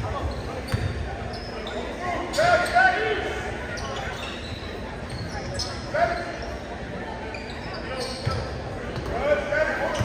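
Basketball being dribbled on a hardwood gym floor, with bounces near the start and again near the end, echoing in the gym under the voices of players and spectators.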